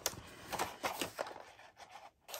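Faint handling sounds of wooden coloured pencils in a metal tin: several light, separate clicks and taps as the tin and pencils are moved.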